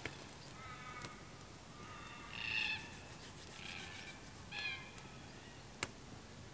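Birds calling: a series of short calls, the loudest about two and a half seconds in, with three more spread through the rest. A few sharp pops, one near the start, one about a second in and one near the end, come from a wood campfire crackling.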